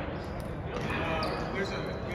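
Indistinct background voices echoing in a large gymnasium hall, with no ball strikes.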